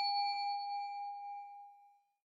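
A single bell-like ding sound effect: a struck chime with a clear ringing tone that fades away over about two seconds.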